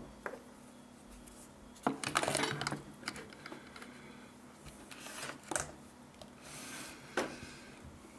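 Small metal hand tools and test clips handled on a workbench: a quick cluster of light metallic clicks and clatter about two seconds in, then single clicks later on.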